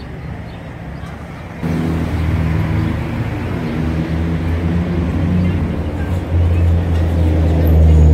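A motor vehicle's engine running close by, coming in suddenly about a second and a half in and staying loud as a steady low hum.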